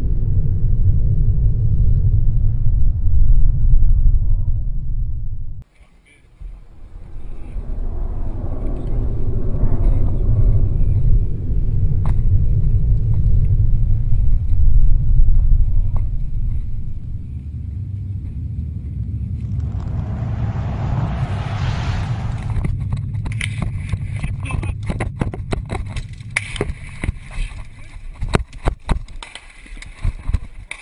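Heavy low rumble of wind buffeting a handheld camera's microphone outdoors, with a brief dropout early on and a short hiss about twenty seconds in. In the last several seconds the rumble gives way to many sharp knocks and clatters as the camera is carried and jostled over loose rock.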